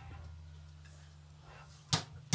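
Low steady hum from the band's amplifiers in a pause between songs, then one sharp drumstick click near the end, the first beat of a count-in into the next song.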